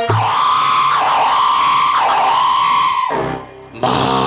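Stage accompaniment music: one long, wavering electronic-sounding melody note held for about three seconds. It breaks off briefly near the end before the music comes back in.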